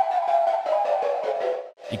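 U-he Zebra2 synthesized flute patch, built from a comb filter and noise, playing a short run of notes. The oscillator's key follow is turned down, so the notes fall at odd microtonal pitches instead of normal tuning. It stops about 1.7 s in.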